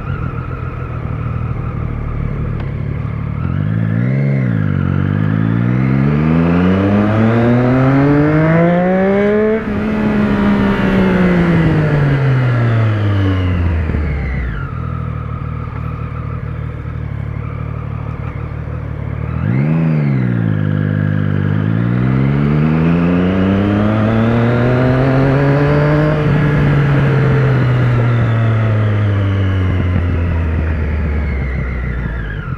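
Motorcycle engine under the rider, at steady revs, then a quick throttle blip about four seconds in followed by a long climb in revs that peaks near the middle and winds down. The same blip and slow climb come again about twenty seconds in, peaking a little lower before easing off near the end.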